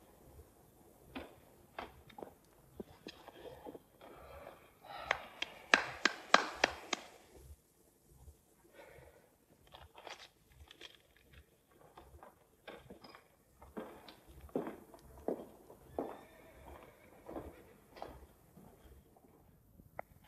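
Faint scattered clicks, knocks and rustles of small handling sounds, with a denser cluster of sharp clicks about five to seven seconds in.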